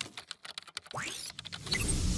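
Intro logo sound effects: a quick run of sharp clicks, a short rising sweep just after a second in, then a whoosh swelling up near the end.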